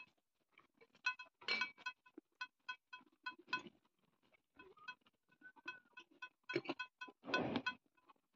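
Light metallic clinks, several a second and irregularly spaced, each ringing briefly at the same bell-like pitch, with a louder clatter near the end.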